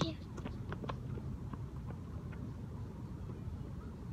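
A few light footfalls and soccer-ball touches on grass, close to the microphone, over the first second and a half, then fading as the player moves off; a steady low rumble runs underneath.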